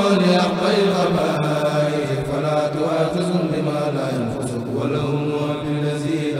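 A Mouride kourel, a choir of men, chanting an Arabic khassida in unison without instruments. They hold long, drawn-out notes that glide slowly in pitch.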